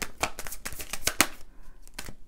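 Tarot cards being shuffled by hand: a quick run of card snaps and slides that thins out after about a second and a half.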